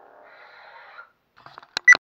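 Neopixel lightsaber's sound board humming, then playing its power-down sound as the blade retracts, cutting off about a second in. A few sharp clicks follow, the loudest two close together near the end.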